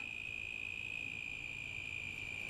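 A steady high-pitched tone, constant and unbroken, over a low background hiss.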